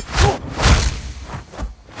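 Hand-to-hand fight sounds: swishes of swinging punches and the hits of blows landing, about five in quick succession in under two seconds.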